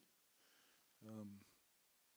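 Near silence: room tone, broken by a single short spoken "um" about a second in.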